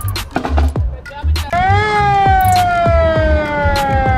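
Fire truck siren coming on suddenly about a third of the way in, a single wail that slowly falls in pitch, over music with a steady beat.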